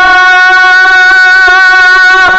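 A man's voice holding one long, steady sung note in a naat recitation.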